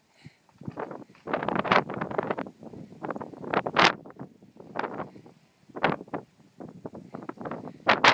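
Wind buffeting the microphone in irregular, short gusts.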